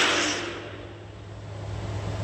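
A hissing, noisy sound fading out over about the first second, leaving a steady low hum with a faint rumble that swells near the end.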